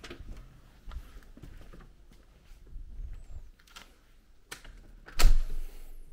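A door with an electronic keypad lock being worked by hand: faint scattered clicks, then a sharp click about four and a half seconds in and a louder thump just after.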